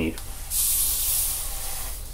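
A short hiss of gas spraying, starting suddenly about half a second in and fading away about a second later.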